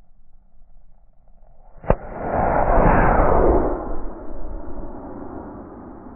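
Model rocket lifting off: a sharp pop about two seconds in as the solid-fuel motor ignites, then the loud rushing hiss of the motor burning for about two seconds, trailing off as the rocket climbs away.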